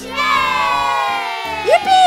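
A young girl shouting one long, high, joyful cry that slowly falls in pitch, with a second short rising whoop joining it near the end.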